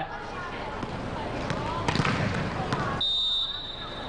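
Indoor volleyball arena crowd noise with two sharp knocks, then one short, steady blast of the referee's whistle about three seconds in, signalling the next serve.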